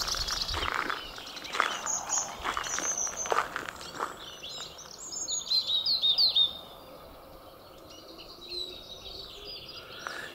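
Small garden birds singing and calling, with a run of quick high chirps about five seconds in.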